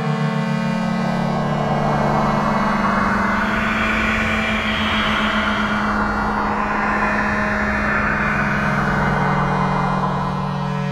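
Algorithmic electroacoustic computer music made in SuperCollider. A sustained low drone of held tones runs under a grainy, noisy texture that swells in about a second in, is fullest around the middle, and thins out near the end.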